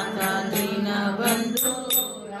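Devotional chanting sung over music, with a steady low drone under the voice and light percussion strikes about every half second.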